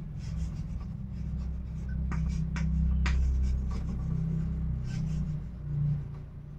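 Chalk writing on a chalkboard: short scratching strokes and small taps of the chalk as a word is written, over a steady low hum.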